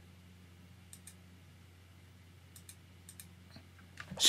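Near silence over a low steady hum, broken by a few faint, short clicks from working a computer: a pair about a second in, then several more near the end.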